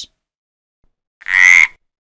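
A frog croaks once, a short call of about half a second with a slight upward lilt, starting just over a second in.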